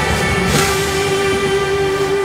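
Background music: a song with a long held note that comes in about half a second in.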